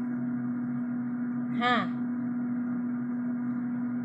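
A steady, even hum of one low pitch, a machine or appliance running. A woman briefly says "ha?" about one and a half seconds in.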